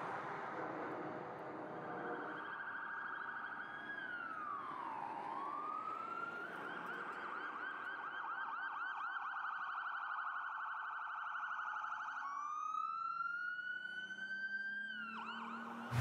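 Faint emergency-vehicle siren over street noise: a held tone swoops down and back up about four to six seconds in, switches to a fast warbling yelp for several seconds, then climbs in a slow wail that drops off sharply near the end.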